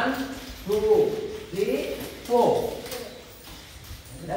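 Voices shouting out counts in a steady rhythm: four short calls, each dropping in pitch, under a second apart, echoing in a large hall.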